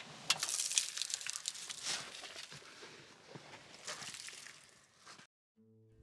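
A grey towel and loose clutter rustling and scraping as they are pulled out of a truck's footwell, with a few sharp clicks. The sound cuts off suddenly near the end and a steady musical note starts.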